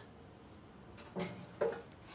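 Quiet kitchen room tone with a few soft clicks and a short knock as a wire whisk is set down after whisking.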